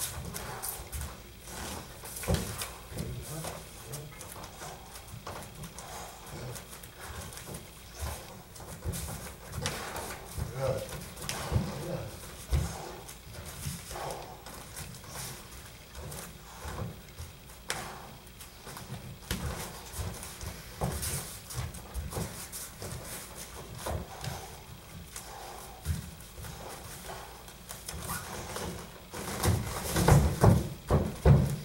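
Bare feet shuffling and stamping on foam training mats, with irregular thuds and slaps from light bare-knuckle sparring. A louder flurry of thuds comes at the very end.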